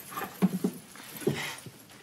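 Several brief wordless vocal sounds from a person, short grunts and moans with no words.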